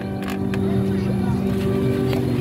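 Vietnamese kite flutes (sáo diều) droning in the wind: several steady tones sounding together like a held chord, over a low wind rumble.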